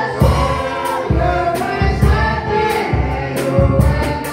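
A woman singing a gospel song into a microphone, amplified, accompanied by an electronic keyboard playing sustained chords over a steady bass beat.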